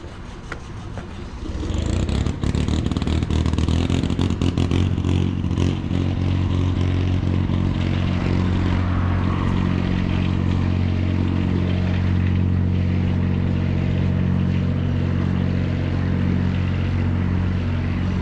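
An engine running steadily close by: a low drone of several even tones that comes in sharply about two seconds in and then holds. A rush of traffic noise lies over it for the first few seconds.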